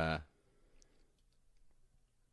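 A man's brief hesitant "uh" at the start, then a pause of quiet room tone with a few faint clicks.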